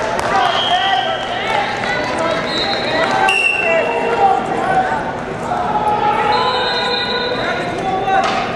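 Busy wrestling-tournament hall: indistinct voices and many short squeaks of wrestling shoes on the mats echo in a large room. A few short, high, steady whistle tones sound from time to time.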